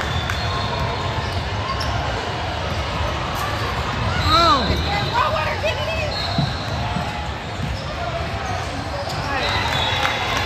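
A basketball being dribbled on a hardwood court, with short sneaker squeaks near the middle, over a steady murmur of voices in a large echoing gym hall.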